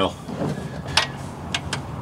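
A few sharp, light clicks of metal on metal as the oil drain plug is worked loose by hand with a magnet held against it.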